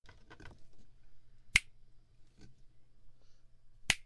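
Two sharp finger snaps, one about one and a half seconds in and one near the end, made close to a binaural dummy-head microphone as a mock hearing check. A few faint clicks come just at the start.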